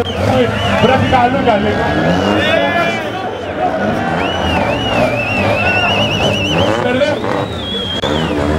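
A drifting car's tyres squealing in long, wavering high-pitched tones that slide up and down, with its engine running beneath.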